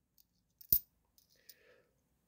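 A 50p coin being set down onto other 50p coins in the palm: one short, light metallic click about three-quarters of a second in, with a couple of much fainter clinks before and after.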